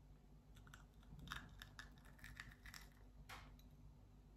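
Faint mouth sounds of chewing a crisp-crusted breaded mozzarella stick: a run of small crackling clicks, with slightly louder crunches about a second and a half in and again just past three seconds.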